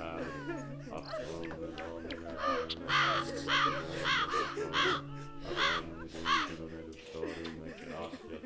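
A crow cawing about eight times in an even run, from a couple of seconds in until past six seconds, over steady low held tones.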